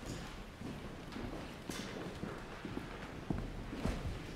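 Footsteps of many people, hard-soled shoes knocking irregularly on a hall floor as a crowd moves about and leaves, over a low hubbub.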